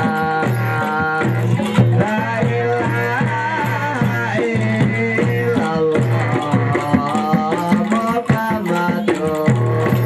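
Javanese traditional music for the lengger tapeng dance: drums beating steadily under held pitched tones, with a singing voice carrying a wavering melody through the middle.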